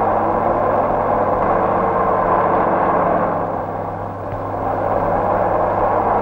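Jeep engine running steadily as the vehicle drives along a dirt road, over a constant low hum, easing off slightly around four seconds in.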